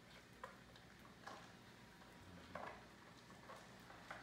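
Faint, occasional clicks and crunches, about one a second, from a Great Dane eating kibble out of a metal bowl.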